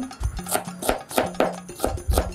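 Chef's knife chopping onion on a cutting board: about six uneven knocks of the blade striking the board.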